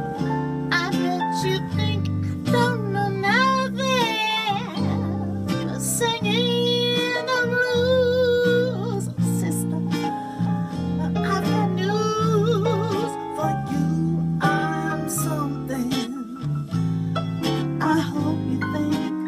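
A woman singing a slow melody with vibrato over guitar accompaniment.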